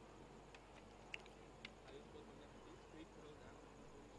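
Near silence: faint background hiss with a few faint clicks.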